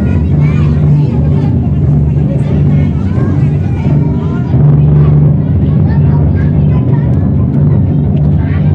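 Loud steady low-pitched drone, swelling about halfway through, under indistinct chatter of several voices.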